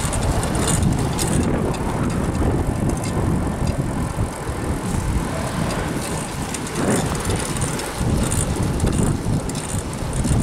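Wind buffeting the microphone of a camera carried on a moving bicycle, a steady low rumble that rises and falls unevenly.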